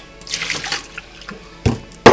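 Broth poured out of a mug into a stainless steel sink, splashing for about a second, then a sharp knock near the end.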